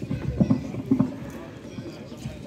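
A handful of dull knocks in an uneven rhythm in the first second or so, with faint voices behind them.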